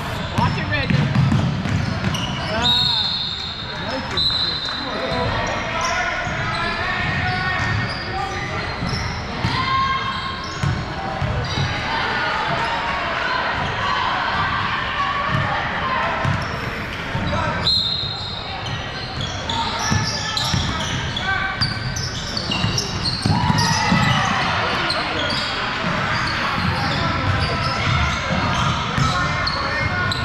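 Basketball game in a large indoor gym: a ball bouncing on the hardwood court, with players' and spectators' voices echoing through the hall. A few short high-pitched squeaks come about three to five seconds in and again past the middle.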